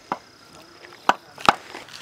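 A small hand axe chopping into a piece of wood being carved by hand: three sharp chops, a faint one at the start and two stronger ones about a second in.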